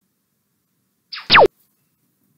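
Countdown timer's end-of-time sound effect: a short whistle-like tone that slides steeply down in pitch and cuts off suddenly, about a second in, after near silence.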